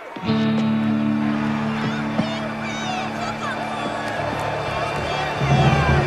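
Tense background music of held low chords starts just after the beginning, over a stadium crowd's shouting and cheering. A louder low note joins near the end.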